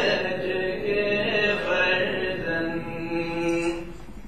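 Singing of the college anthem in Urdu: a slow, chant-like melody with long held notes, the line ending shortly before the close.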